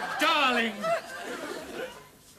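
Voices: a short vocal exclamation falling in pitch in the first second, then quieter murmuring.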